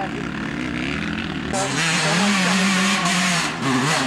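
Enduro dirt bike engine revving hard near full throttle, its pitch rising and falling as it works up a steep muddy climb. About a second and a half in, the engine sound gets louder and brighter.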